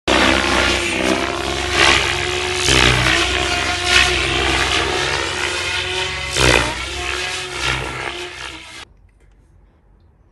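Loud channel-intro soundtrack under the logo: a dense sound with steady pitched tones and several sweeping swells, cutting off suddenly about nine seconds in.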